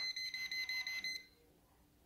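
Klein Tools non-contact voltage pen beeping: a rapid string of high beeps for just over a second, then it stops. It is sensing 120 volts at the live terminal of the microwave's thermal cutoff, the side that voltage reaches before the open cutoff.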